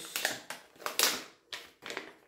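Plastic packet of under-eye patches crinkling as it is handled, in several short rustles, the loudest about a second in.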